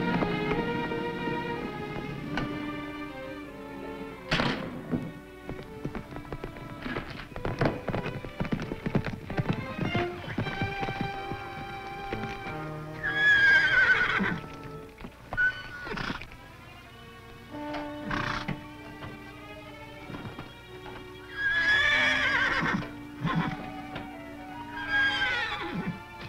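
A horse galloping, then neighing loudly three times: once about halfway through and twice near the end, over background music. Hoofbeats fill the first half.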